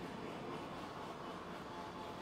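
Steady, fairly quiet outdoor background noise: an even rumble and hiss with no distinct events.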